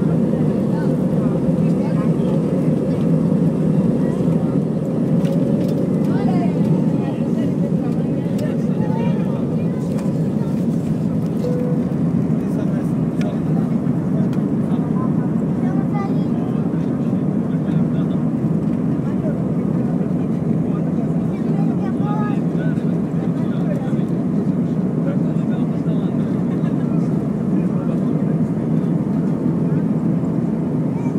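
Steady engine and rushing-air noise inside a jet airliner's cabin during the takeoff roll and initial climb, a loud, even drone.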